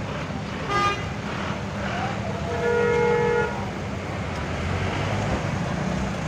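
Car horns honking in stop-and-go street traffic over the low rumble of idling engines: a brief toot about a second in, then a longer, louder horn blast held for about a second.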